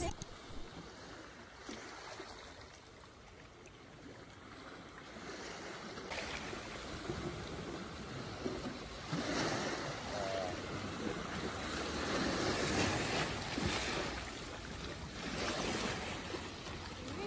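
Small sea waves washing in over rocks and shingle at the shoreline. It is quiet for the first few seconds, then the wash of the surf grows louder.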